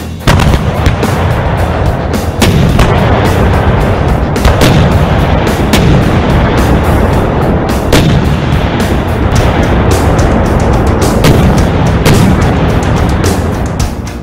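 Cartoon battle sound effects: rapid gunfire and explosions, loud and unbroken, over background music.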